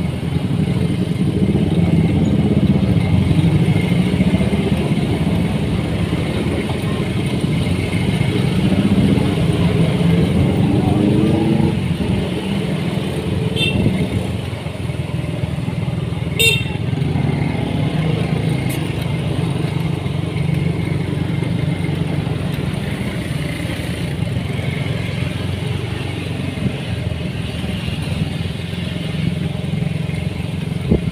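Motorcycle engine running steadily while riding along a busy street, with other traffic and voices in the background. There is a brief sharp sound about sixteen seconds in.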